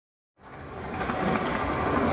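Skateboard wheels rolling over pavement with a rough, rattling hum, coming in about half a second in and growing steadily louder as the board approaches.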